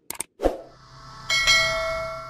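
Subscribe-button animation sound effects: a quick double mouse click, a soft pop, then a bright bell ding that rings on and slowly fades.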